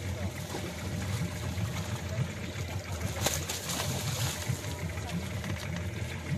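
Seawater splashing and churning around a wire fish trap as it is hauled up against the side of a boat, with one sharper splash about three seconds in, over the steady low hum of a boat engine.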